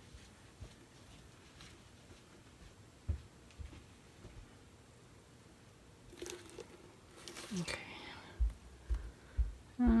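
Quiet room tone, then near the end a few short, low knocks as the plastic tray holding the wet poured canvas is gripped and handled.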